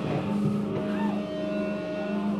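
Electric guitar and bass amplifiers humming and droning on steady tones while the drums are silent, with a few short whines of feedback rising and falling in pitch.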